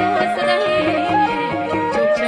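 Khmer traditional (pleng boran) wedding music: a woman singing a melismatic melody with wavering pitch through a microphone, over a traditional ensemble playing a stepwise melody.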